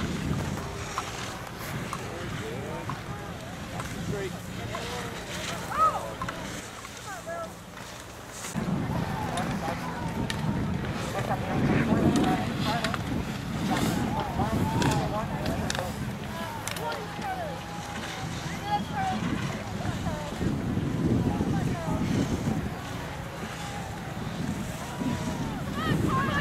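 Wind buffeting the camera's microphone in gusts, with faint, indistinct voices of people in the background. The rumble drops away for a couple of seconds and comes back abruptly about eight and a half seconds in, and there is one short knock about six seconds in.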